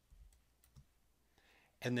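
A few faint computer mouse clicks in the first second, with a man's voice starting near the end.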